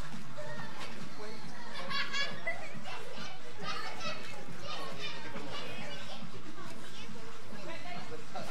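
Children shouting and calling out in high voices while playing in a swimming pool, busiest from about two to five seconds in.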